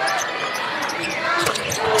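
Basketball arena game sound: crowd murmur and sneaker squeaks on the hardwood court while a three-point shot is in the air, with one sharp knock about a second and a half in.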